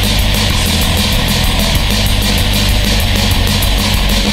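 Black/pagan metal music: dense distorted guitars and bass over fast, evenly repeating drumming.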